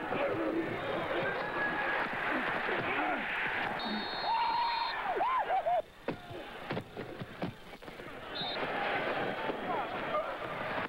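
Football players shouting and a stadium crowd, picked up by field microphones during a play. A referee's whistle blows for about a second, about four seconds in, with a short second toot about eight seconds in.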